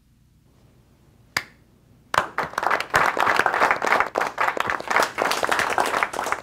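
A small group applauding: a single clap after a short hush, then about half a second later many hands clapping together.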